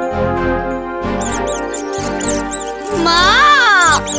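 Cartoon mouse squeaks over background music: from about a second in, a quick stream of short, high squeaks, then a loud squeal near the end that rises and falls in pitch.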